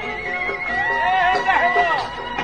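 Constantinois malouf ensemble playing live. A high note is held throughout, and from just under a second in a high, wavering voice bends up and down over it.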